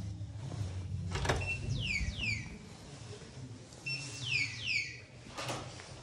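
Electronic keycard door lock: a click, then a short beep followed by quick falling electronic chirps, the beep-and-chirps sounding twice, with a latch or handle click near the end. A low hum runs underneath.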